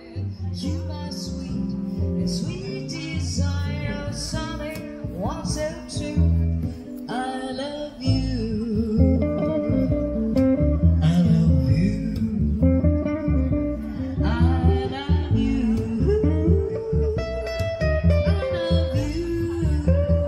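Live jazz trio: a woman singing over plucked double bass and guitar, with a steady walking bass line underneath.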